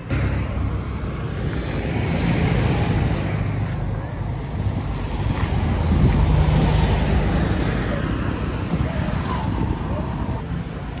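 Street traffic noise from cars and motorcycles moving along a busy town road, a steady mix with no single engine standing out.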